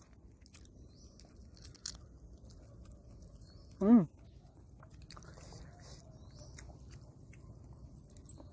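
Faint chewing and small mouth clicks of people eating, with a single short 'hmm' about four seconds in.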